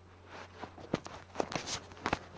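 A few irregular clicks and knocks with faint rustling over a low steady hum, heard in a played-back field recording.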